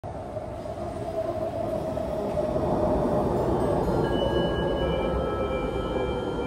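Metro train running through the station, a steady rumble with a motor hum that slides slowly lower in pitch as the train slows. It grows louder over the first couple of seconds.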